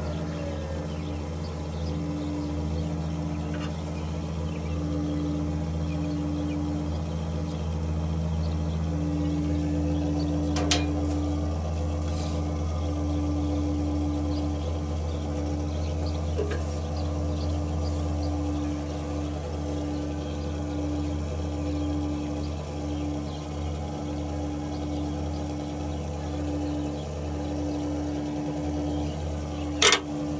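A tractor's diesel engine idling steadily, with a higher hum that pulses on and off irregularly, and one sharp click about ten seconds in.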